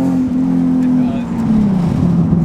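Nissan 370Z NISMO's VQ37 V6 running through a freshly fitted ISR single exhaust and Y-pipe, heard from inside the cabin: a steady drone at cruising revs that drops in pitch near the end as the revs fall.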